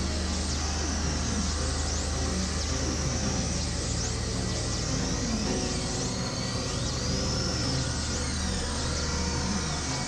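Experimental electronic noise music: a steady low drone under a dense wash of noise, with scattered held tones and high pitch sweeps gliding up and down.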